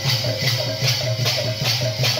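Kirtan music: large brass hand cymbals clash in a fast, steady rhythm, about four to five strokes a second, over a double-headed barrel drum.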